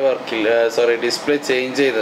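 Speech only: a person talking continuously, with a steady hum beneath.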